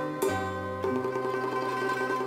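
Instrumental passage of Vietnamese chèo accompaniment: plucked string notes over steady held tones, with no singing. New notes come in twice, early and near the middle.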